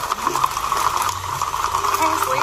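Hooves of a large herd of horses clattering on a paved street, a dense, continuous rapid clatter with no single beat standing out.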